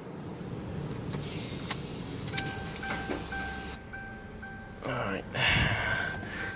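A car's electronic warning chime repeating at about two beeps a second, starting about two seconds in. It follows a few plastic clicks and knocks from handling the pulled instrument cluster and its wiring.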